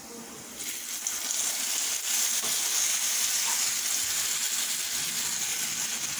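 Hot oil in a frying pan sizzling as a watery paste of red chilli and turmeric powder goes in over fried onions. The sizzle starts about half a second in and then holds steady.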